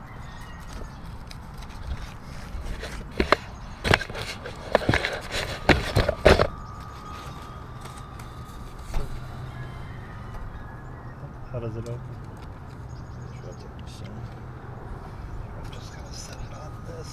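A quick cluster of sharp clicks and knocks from objects being handled close to the microphone, between about three and six seconds in, followed by a faint steady hum.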